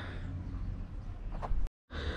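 Low steady background rumble and hiss with no distinct event. A brief faint sound comes about one and a half seconds in, then the sound cuts out to total silence for a split second at an edit.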